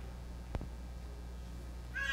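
Quiet church room tone with a steady low hum, a single sharp click about half a second in, and a short high-pitched sound beginning right at the end.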